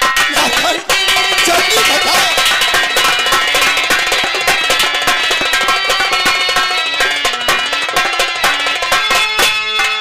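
Live nautanki stage music: harmonium playing held notes over fast, steady hand-drum strokes. It breaks off briefly about a second in.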